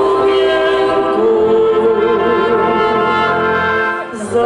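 Czech brass band music with a vocal trio, one man and two women, singing a folk-style song in harmony over the band's sustained brass chords and bass.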